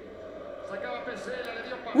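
Speech from the football match broadcast: a male commentator talking at moderate level.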